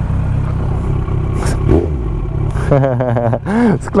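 Yamaha R1 inline-four motorcycle engine idling steadily, with a person's voice and laughter over it in the last second or so.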